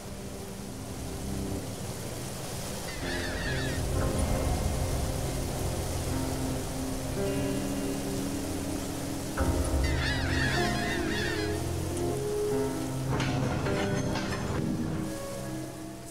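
A mass of anchovies pouring and slithering into a fishing boat's hold, a steady rushing like heavy rain, under music with low sustained notes. Bursts of high squawking bird calls come in twice, a few seconds in and again about ten seconds in.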